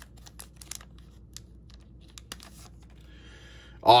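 A card-pack wrapper being opened by hand: scattered crinkling clicks, then a brief rustle near the end as the stack of cards slides out.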